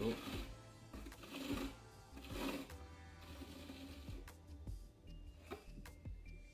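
Twine being drawn through small holes in a cardboard box: three rasping pulls in the first three seconds, with small taps of cardboard handling, over quiet background music.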